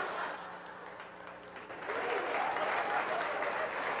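Live theatre audience applauding after a comedy sketch, the clapping dipping briefly and then swelling again about two seconds in.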